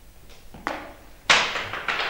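Handling noise on a handheld microphone: three sharp knocks, the middle one loudest, each trailing off briefly.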